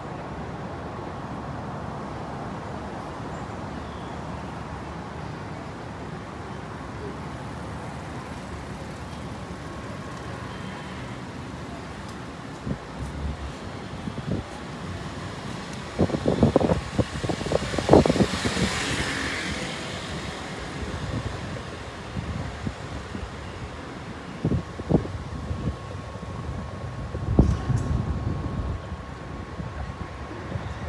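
Street traffic noise: a steady background hum, with louder passing-vehicle noise that swells and fades past the middle, plus a few scattered thumps later on.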